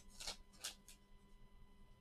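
Soft rustling of a baseball card pack's wrapper and cards being handled, three brief rustles in the first second, then near silence with a faint steady hum.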